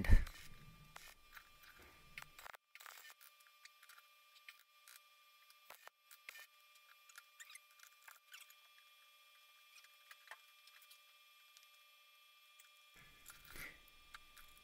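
Near silence: faint room tone with a few small, scattered clicks and a faint steady high hum.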